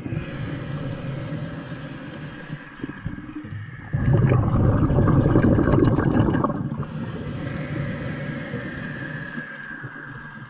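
Underwater water noise against a camera housing, a murky churning and gurgling that surges louder for a few seconds from about four seconds in, then settles back.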